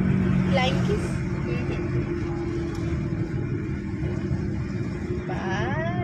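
Steady low road and engine rumble heard inside a moving car's cabin, with a constant low hum running under it.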